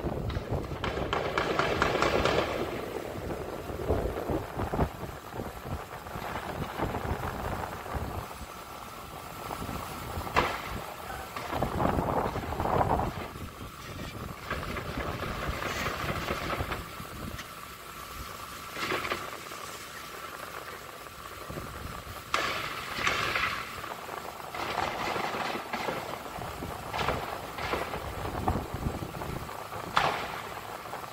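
Distant gunshots echoing over the city: a handful of sharp cracks spread a few seconds apart, over a steady hum of traffic.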